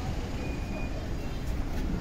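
Town street background noise: a steady low rumble of traffic.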